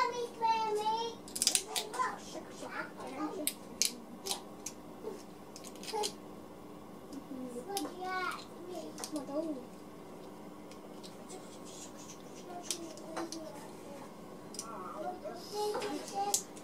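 A young child's high voice babbling now and then, loudest near the start and again about eight seconds in. Between the calls come scattered light clicks and scrapes of a metal pick prying softened water-soluble PVA support out of a plastic 3D print.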